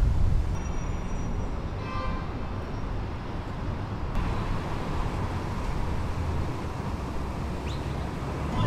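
Downtown street ambience: a steady low rumble of road traffic, with a brief pitched tone from a vehicle about two seconds in.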